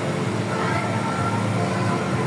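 Steady mechanical hum of a running motor, a low drone with several held tones that do not change.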